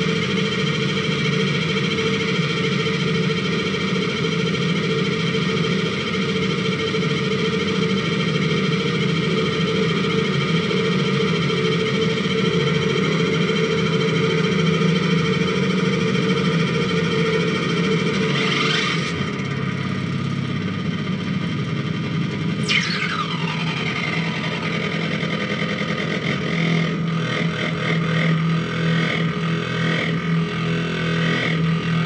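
Live distorted electronic noise from a tabletop rig of small circuit boards and effects pedals: a dense, steady drone of many layered tones. About two-thirds in a sweep rises in pitch, then a second sweep falls from very high, and the texture thins slightly, with a low hum near the end.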